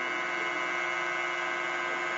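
Homemade Bedini-style pulse motor, a ten-transistor energizer with one trigger coil and fifteen run coils wired in parallel, running at speed: a steady, buzzing hum with many even overtones.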